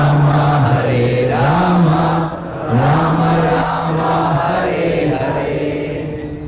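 A man chanting a Vaishnava prayer into a microphone in long, drawn-out held notes, the pitch stepping between a few steady tones.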